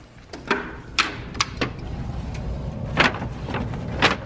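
A sliding glass door being unlatched and rolled open on its metal track: several sharp clicks and knocks, with a low rolling rumble building from about halfway and a louder knock near the end.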